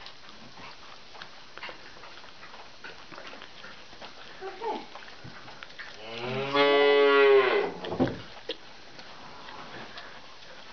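A goat bleating once, a single long low call lasting about a second and a half, starting about six seconds in.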